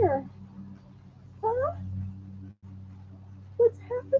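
West Highland White Terrier puppy whining in three short, high calls, the first falling in pitch and the second rising, over a steady low hum.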